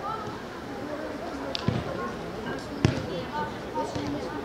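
A football being kicked twice on an artificial-turf pitch, two sharp thuds about a second apart, over distant voices of players and spectators.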